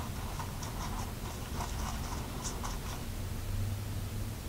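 A small applicator stirring and scraping eyebrow dye in a plastic case: a run of faint, short scratches and ticks that stops about three seconds in.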